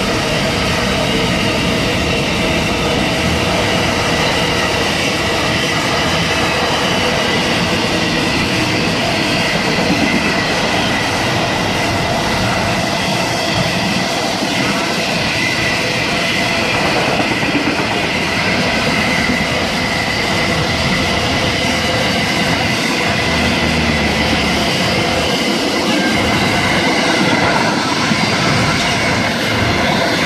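Container freight train wagons rolling past: a loud, steady rumble of steel wheels on rail with clickety-clack over the rail joints, and steady high-pitched ringing tones from the wheels and rails.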